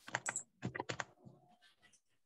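Typing on a computer keyboard: a quick run of about eight key clicks in the first second, then fainter, sparser clicks.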